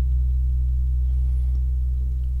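A steady, low-pitched rumbling drone that holds unchanged, with no rise or fall in pitch.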